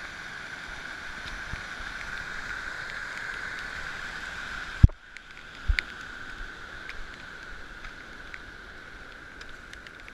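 Rushing water from a stream torrent flooding across a hill path, mixed with wind on the camera. A sharp knock comes about five seconds in, after which the rush drops and thins. A second knock follows, then a quieter rush with scattered small clicks.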